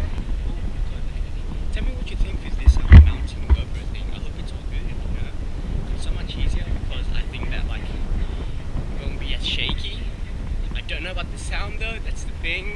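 Wind buffeting a GoPro's microphone, a steady low rumble throughout, with a loud thump about three seconds in.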